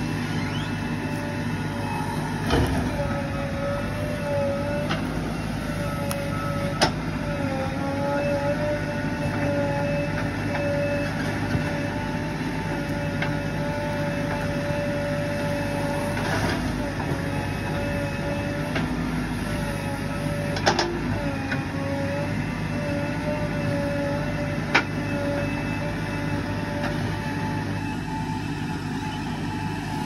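JCB 3DX backhoe loader's diesel engine running under load with a wavering whine as it works its arm, and several sharp knocks as the bucket digs and drops soil into a steel dump truck body.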